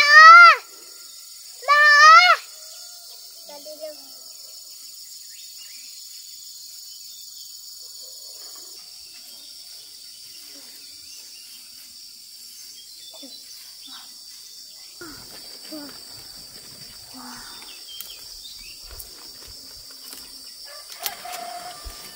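A young child calls out twice in a high, loud voice, each call rising and falling in pitch, within the first two seconds or so. After that, insects drone steadily in the background, with a few faint rustles.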